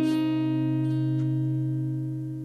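Steel-string acoustic guitar chord, strummed just before, ringing out and slowly fading as the song's closing chord.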